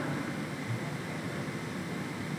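Steady, even hiss of room tone picked up through the podium microphones, with no distinct event.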